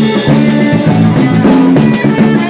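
Live blues trio playing an instrumental passage: electric guitar (a Parker Fly hardtail through a Koch Studiotone amp), electric bass and drum kit. Two cymbal crashes, about half a second in and at the end.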